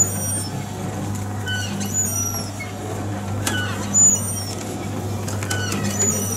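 A steady low hum runs throughout, with small birds chirping in short, high, falling notes over it and a brief louder sound about four seconds in.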